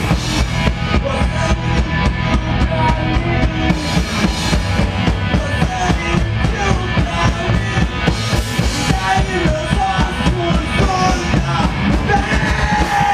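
Live rock band playing: a drum kit beats a steady, fast rhythm of bass drum and snare under electric guitar played through Marshall amplifiers.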